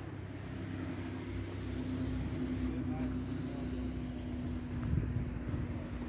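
An engine running with a steady low hum and rumble, holding an even pitch.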